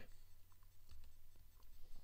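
A few faint computer keyboard key clicks, including the Return key entering a typed command, over a steady low hum.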